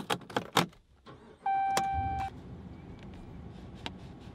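Keys jingling and clicking at the ignition of a Ram pickup, then about a second and a half in a single steady dashboard chime sounds for under a second as the engine is started, leaving a steady low idle heard from inside the cab.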